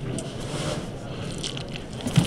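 A built-up roofing membrane ply being peeled up off fresh two-component adhesive, a continuous sticky tearing noise. The ply is pulling away from a full, evenly spread bond of glue.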